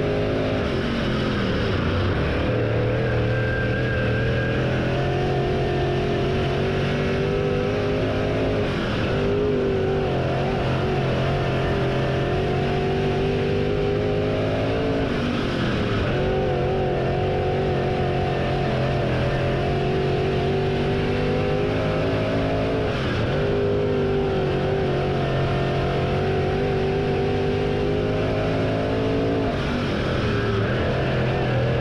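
Dirt late model race car engine at racing speed, heard on board from under the car. The revs fall sharply about every seven seconds as the car lifts into each corner, then climb back steadily down each straight, lap after lap.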